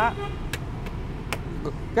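Steady low rumble of street traffic. A few light clicks and knocks come as a portable pull-up projector screen's long metal case is closed and handled.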